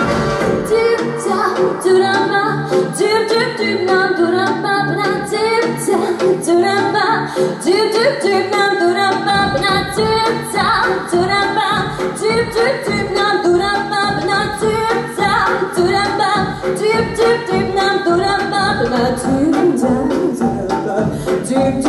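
Female pop vocalist singing into a microphone over a backing track, including repeated "doo doo doo" scat phrases. The bass and beat drop out for roughly the first half, then come back in with a steady pulse about halfway through.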